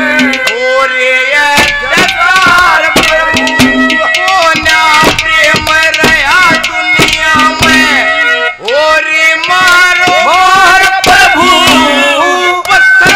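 Haryanvi ragni performed live: a male voice sings over quick, continuous hand-drum strokes and a sustained melodic accompaniment.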